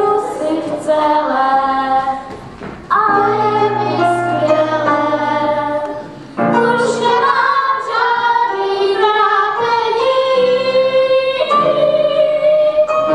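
A group of children singing a song together to piano accompaniment. The sung phrases break off briefly twice, about three and six seconds in.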